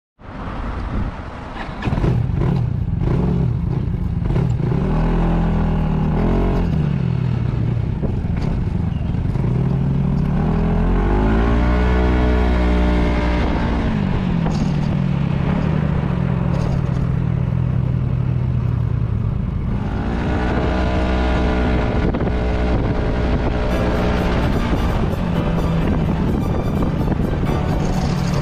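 Yamaha Majesty S scooter's single-cylinder engine running as the scooter rides off, its note climbing as it accelerates and falling back as it eases off, more than once, with wind rushing on the bike-mounted microphone.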